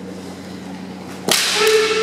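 A single sharp crack of a bamboo shinai striking a kendo fencer's armour, about a second and a half in, followed at once by a loud held shout (kiai).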